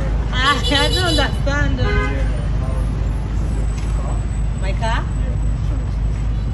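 Voices calling out in short, rising and falling exclamations with no clear words, over a steady low rumble of outdoor background.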